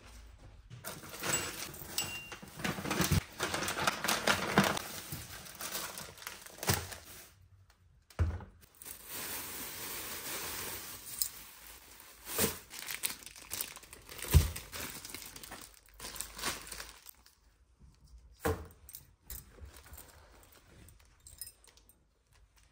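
Thin plastic produce bags crinkling and rustling as groceries are lifted out of a cloth tote bag, with a few sharp knocks as items are set down on the counter.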